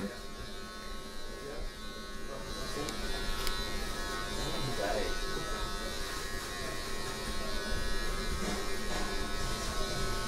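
Electric hair clippers buzzing steadily.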